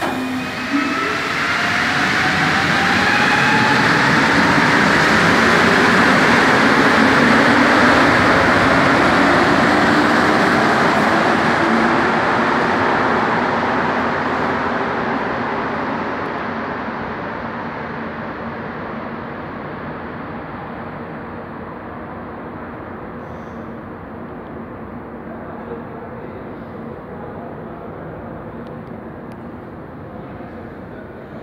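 Rubber-tyred Montreal metro train (STM Azur MPM-10) pulling out of the station: its motor whine rises in pitch over the first few seconds as it speeds up. The running noise swells for about eight seconds, then fades slowly as the train draws away into the tunnel.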